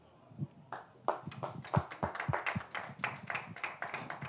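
Scattered clapping from a small audience, starting about a second in and running on irregularly, as one speaker finishes his point.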